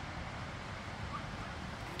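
Steady low rumble of outdoor background noise, with wind buffeting the phone's microphone.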